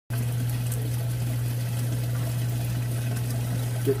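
Aquarium water circulation: a steady trickle of moving water over a low, steady pump hum.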